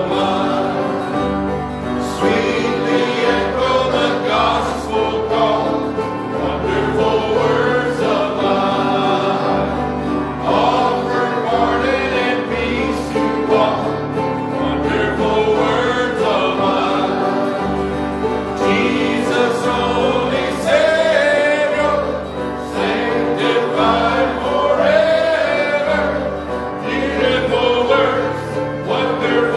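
Church congregation singing a gospel hymn together, led by a man at the pulpit, over a steady instrumental accompaniment with a pulsing bass line.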